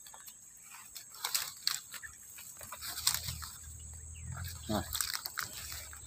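Footsteps crunching and rustling through dry plant litter and undergrowth, with scattered small snaps, over a steady high insect hum.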